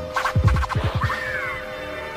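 Turntable scratching in an electronic music jingle: a run of quick up-and-down pitch sweeps from a record pushed back and forth, over a held note.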